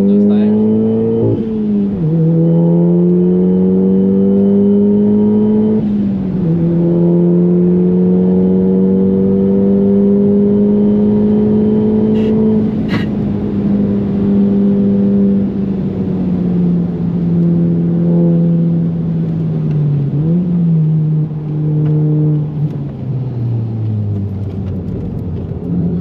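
Tuned VW Golf GTI's turbocharged four-cylinder heard from the cabin under hard acceleration through the gears: the engine note climbs, drops sharply at two upshifts early on, then rises slowly at high revs. About halfway through the throttle comes off and the note falls as the car slows, with a short rev blip on a downshift near the end. There is one sharp click in the middle.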